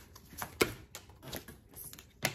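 Tarot cards being shuffled by hand: a few short sharp card snaps and slaps, the loudest just over half a second in.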